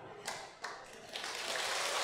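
An audience clapping: a few scattered claps, then applause building into a soft, even patter in the second half.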